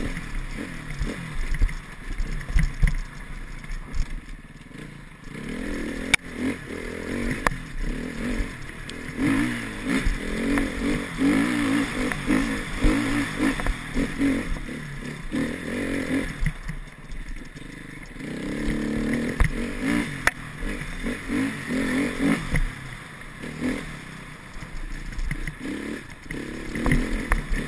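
Enduro motorcycle engine revving up and easing off over and over as the bike is ridden along a rough, snowy trail, heard from a helmet-mounted camera. Occasional sharp knocks and rattles come from the bike over bumps.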